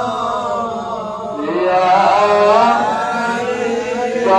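A man's voice chanting an Islamic devotional chant through a microphone, in long held notes that glide upward and grow louder about halfway through.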